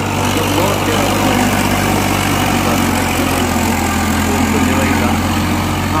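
Farmtrac 60 EPI tractor's diesel engine running at a steady pitch while pulling a disc harrow through dry, sandy soil.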